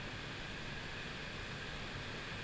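Steady low hiss of room tone, with no distinct events.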